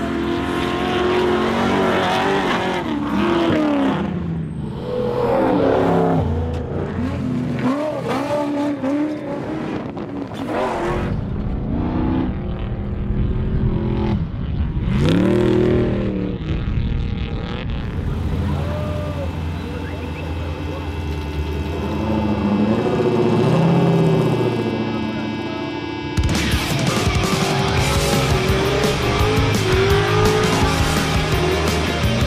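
Trophy truck engines revving hard and passing by, in a string of rising and falling revs. Music comes in near the end.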